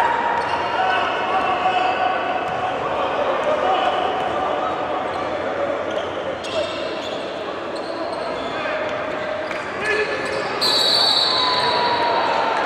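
Basketball dribbled on a hardwood gym floor during live play, with short high squeaks and voices echoing in the large hall.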